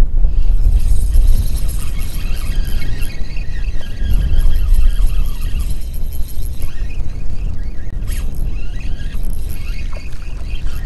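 Wind rumbling on the microphone of a camera worn by a wader in shallow bay water. A faint, steady high whine sits over it for most of the time, breaking off briefly about two thirds of the way through.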